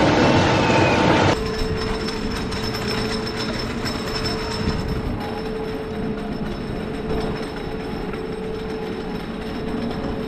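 Wooden roller coaster train running on its track, a loud close rumble that cuts off abruptly about a second in and gives way to a quieter, more distant rumble with a faint steady hum.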